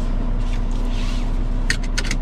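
2023 Dodge Hornet GT's turbocharged four-cylinder idling steadily in the cabin, just after a push-button start. Near the end, a few quick clicks and rustles as the seatbelt is pulled out across the driver.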